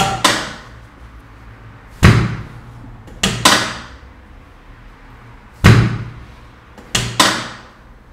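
Chiropractic drop table's sections dropping under the chiropractor's thrusts on the lower back: seven loud clacks with short ringing tails, the third and fourth and the last two in quick pairs.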